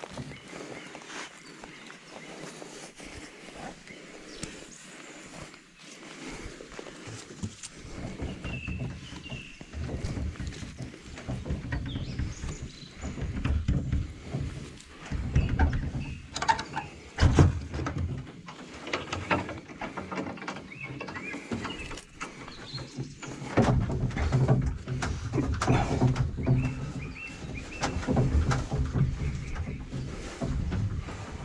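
Someone climbing and moving about in a wooden hunting stand: irregular knocks and thumps on wood, with scraping, rustling and low rumbling handling noise on the microphone, denser from about a quarter of the way in.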